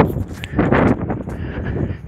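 A man's heavy, out-of-breath breathing close to the phone microphone while climbing a steep street, in a run of rushing surges mixed with wind on the microphone.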